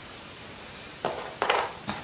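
Faint steady room hiss, then from about a second in a few light clicks and taps as small LEGO tyres are handled and set down on a plastic LEGO baseplate.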